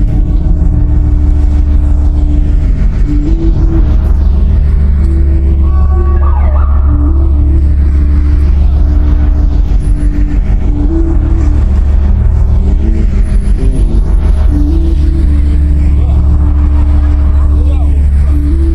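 Car engine running with a deep, steady rumble and voices over it, with a low repeating melody underneath. The whole mix sweeps slowly around the head in an 8D panning effect.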